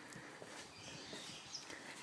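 Faint outdoor background noise, with a brief high chirp near the end.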